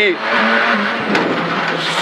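Renault Clio R3C rally car heard from inside the cabin: the engine note dips slightly under a loud, steady rush of road and mechanical noise.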